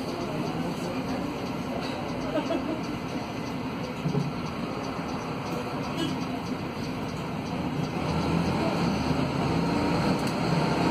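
Mercedes-Benz OC500LE city bus heard from inside the cabin: its OM936 six-cylinder diesel idling steadily while the bus waits, then rising in level about eight seconds in as it pulls away.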